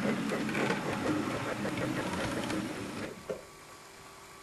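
Electric model train running along the track, its motor and wheels giving a steady mechanical rattle that dies away about three seconds in.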